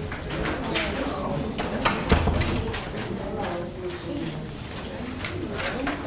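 Indistinct chatter of several people in a classroom, with papers rustling as they are passed forward, and a single sharp knock about two seconds in.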